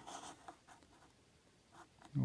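Faint scraping and a few light taps of stacks of silver quarters being slid and set down on a hard tabletop, one about half a second in and another near the end.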